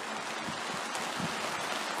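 Steady rain shower falling, an even hiss.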